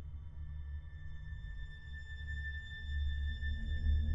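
Ambient film-score music: a deep, pulsing low drone under thin, sustained high held tones, swelling louder about three seconds in.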